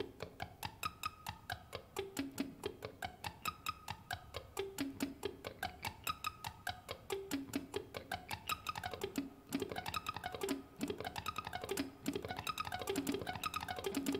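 Electric guitar on a clean tone playing slow sweep-picked arpeggios, the pick held straight to the strings. Evenly spaced single notes, about five a second, in a repeating up-and-down pattern, each with a crisp pick attack.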